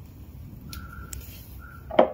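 Low steady hum of a running bottle-capping machine, with two short high squeaks in the middle. A sharp knock near the end, as a hand strikes the plastic-capped glass bottles.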